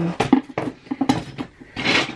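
GraviTrax balls, just popped out of the launch pad, clattering and bouncing across a desk: a quick run of sharp clicks and knocks, the loudest about a third of a second in.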